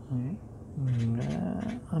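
A man's low, drawn-out hesitation sound, a brief hum and then a long 'euh', in the middle of a sentence.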